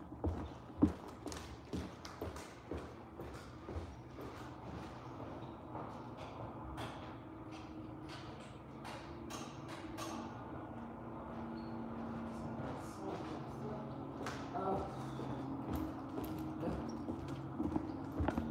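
Irregular light knocks and clicks, coming several together at times, over a low steady hum that grows slightly louder in the second half.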